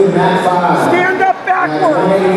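Indistinct chatter of several spectators talking at once.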